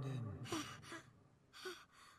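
A faint sigh from a person's voice: a low sound falling in pitch, then two short breathy exhales.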